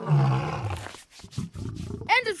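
Cartoon giant cat creature giving a low roar that falls in pitch over about a second, as its tummy is tickled, followed by quieter low rumbling.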